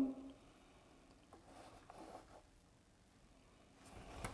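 Quiet room with a few faint, soft handling sounds, about a second and two seconds in, as hands adjust a repetitive stop against an aluminium guide track.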